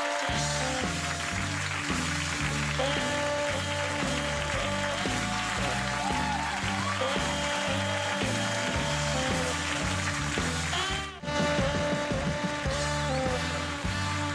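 Talk-show house band playing break music with a steady, repeating bass line and melodic lines above it, dipping out for a moment about eleven seconds in.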